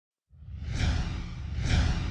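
Whoosh sound effects: two rising-and-falling swooshes, the first just under a second in and the second near the end, over a low pulsing rumble, starting out of silence.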